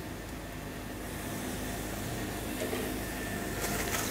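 Steady low hum and hiss of a running kitchen gas range, with faint scraping near the end as a spoon starts stirring the tomato sauce in the aluminium pan.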